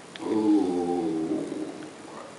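A man's drawn-out hesitation sound, one held "eeh" lasting about a second and a half and falling slightly in pitch, with no words in it.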